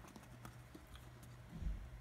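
A few faint, sharp clicks from fingers handling a paper verb wheel, over a low steady hum, with a soft low thump near the end.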